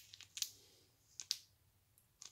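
A few faint, brief clicks and crinkles of foil trading-card pack wrappers being handled, about half a second in and again past the middle.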